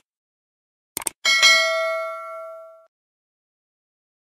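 Subscribe-animation sound effect: two quick clicks about a second in, then a notification-bell ding that rings out and fades over about a second and a half.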